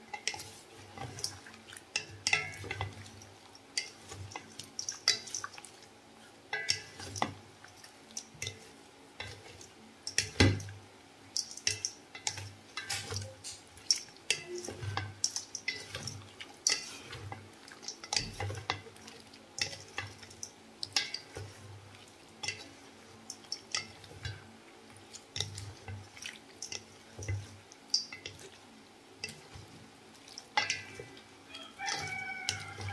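Two wooden spatulas stirring and tossing juicy sliced green mango in a stainless steel bowl: irregular scraping and clicking with soft knocks of wood on the metal bowl, one sharper knock about ten seconds in. The stirring dissolves the sugar and salt and draws juice out of the mango slices.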